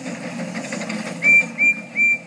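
A bicycle bell rings three times in quick succession, each ring short, high and clear, over faint background noise.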